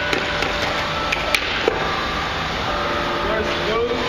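Skateboard clacking against concrete pavement as it is picked up: about five sharp knocks in the first two seconds, over steady outdoor noise and voices.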